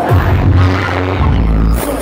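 Loud pop music over an arena sound system, recorded from the crowd: a deep bass note slides down in pitch at the start and holds, then drops away near the end.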